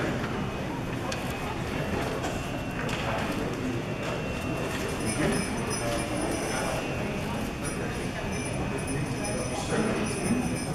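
Sleigh bells on a strap jingling from about five seconds in, with a few scattered knocks and room chatter underneath.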